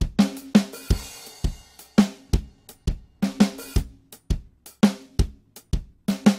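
Sampled acoustic drum kit from the Toontrack Americana EZX library playing back a laid-back MIDI groove of kick, snare and hi-hat. A cymbal washes over the beat about a second in.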